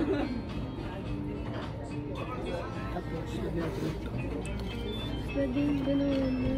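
Background music playing in a restaurant, with a few held melodic notes, over a steady low hum and faint indistinct voices.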